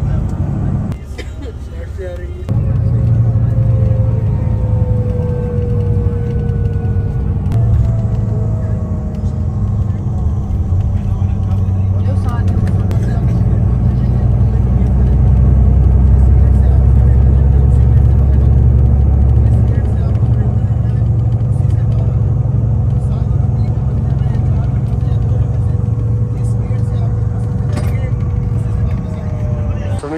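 Low, steady rumble of a coach bus's engine and tyres heard from inside the moving bus, swelling for a few seconds in the middle.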